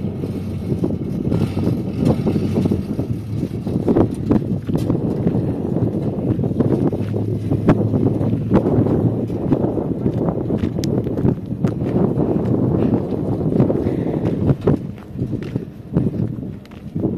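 Small pickup truck's engine running as it drives slowly away up a dirt track, with wind on the microphone. Short crunching ticks of footsteps on the dirt run through it.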